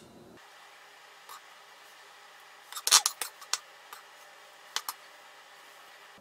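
Chef's knife scraping and knocking as chopped onion is moved from a wooden cutting board into a stone molcajete: a quick cluster of clicks and scrapes about three seconds in, then a couple more short clicks near the five-second mark.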